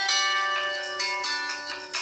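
Mobile phone ringtone: a bell-like chiming melody of quick struck notes that ring over one another.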